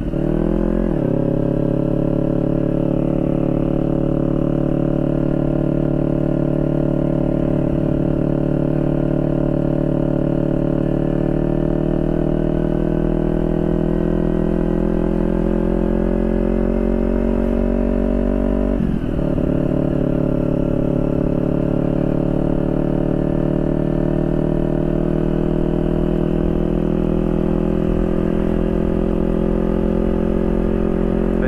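A motorcycle engine runs at a steady riding speed, heard from the rider's seat. Its pitch falls just after the start and then creeps slowly upward. It dips briefly about two-thirds of the way through before picking up again.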